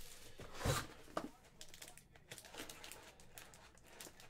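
Faint crinkling of plastic shrink wrap and rustling of a cardboard trading-card hobby box as it is unwrapped and its lid flipped open, with a soft knock under a second in.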